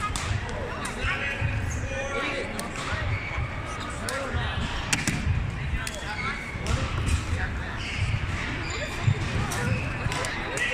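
Sharp clicks of badminton racket strings hitting a shuttlecock, scattered through a sports hall, over a steady background of people talking.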